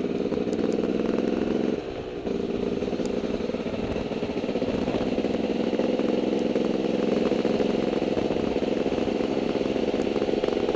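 Dirt bike engine running steadily under way, heard up close from on board, with a brief dip in the engine note about two seconds in and some light rattling over the trail.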